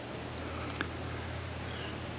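A low, steady background hum with faint noise over it, and a single small click a little under a second in.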